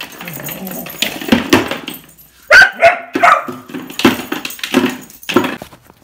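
A dog barking repeatedly in short, loud, irregular bursts, the loudest about halfway through, while it plays with a small motorised rolling toy.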